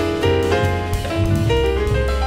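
Live jazz trio: acoustic piano playing a busy run of notes and chords over double bass and drums.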